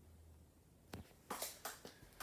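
Faint steady low hum, then a single click about a second in and a few short rustling, scuffing noises in the second half, as the phone camera is handled and moved.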